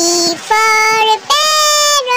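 A high child's voice singing three long, level notes, chanting the card's 'P for parrot' in the sing-song way of an alphabet rhyme.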